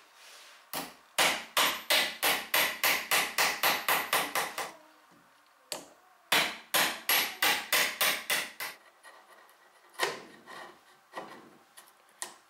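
A mallet striking a chisel in quick runs of blows, about four or five a second, chopping waste wood out of a mortise. There are two long runs with a short break between them, then a few single blows near the end.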